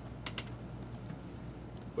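A few quick, light clicks close together in the first half-second, over a steady low hum in a quiet room.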